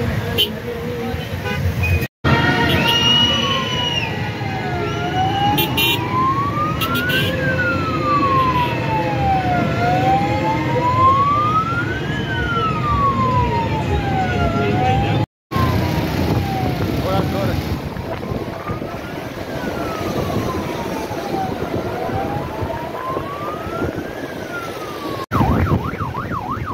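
A vehicle siren wailing, its pitch rising and falling slowly about every five seconds, over road traffic noise and voices. The sound drops out briefly three times.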